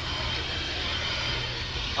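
Steady low rumble with a faint hiss, with no distinct events.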